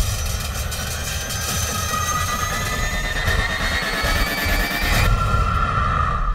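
Cinematic trailer sound effects: a heavy low mechanical rumble under shrill metallic tones that rise in pitch over a few seconds, then settle into a steady screech about five seconds in.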